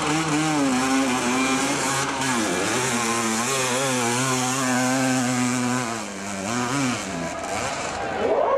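Motocross bike engine revving hard, its pitch mostly held high. The pitch dips and recovers about two and a half seconds in, again around six seconds, and falls away near the end.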